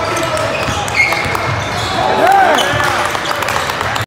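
Basketball game sounds on a hardwood gym court: sneakers squeaking, with a cluster of squeaks a little past two seconds in and a single sharp squeak about a second in, over the thud of the ball and voices echoing in the hall.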